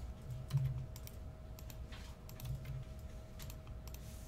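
Typing on a computer keyboard: irregular key clicks, with a couple of dull low knocks, the loudest about half a second in, over a faint steady hum.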